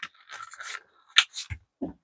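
Corrugated plastic split loom tubing scraping and rustling as heavy 6-gauge wire is pulled through it. A sharp click comes a little over a second in, followed by a few softer knocks.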